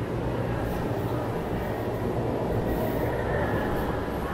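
Steady low rumbling background noise with a low hum underneath, even throughout with no distinct knocks or voices.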